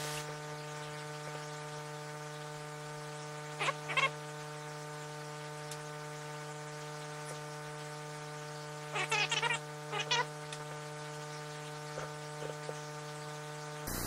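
Steady electrical buzzing hum with a stack of evenly spaced overtones, the kind of hum a faulty microphone setup puts on a recording. A couple of brief, squeaky handling sounds cut through it about four seconds in and again around nine to ten seconds.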